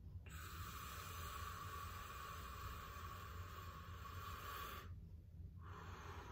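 A man's slow, deep diaphragmatic breath, faint: a long inhale of about four and a half seconds, then a softer exhale beginning near the end.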